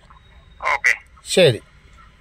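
Speech only: a man's voice saying two short words with a falling pitch, the first a little after half a second in and the second about halfway through.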